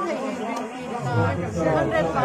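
People talking, with several voices of chatter overlapping.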